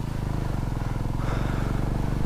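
Motorcycle engine running at a steady pace while riding, its low firing pulse even throughout, with a little road and wind noise.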